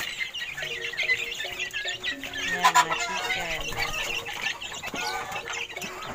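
Several backyard chickens clucking, with short overlapping calls throughout.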